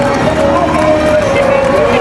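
A man's voice from a recorded video message playing over loudspeakers in a hall, echoing and hard to make out, over a steady background of room noise.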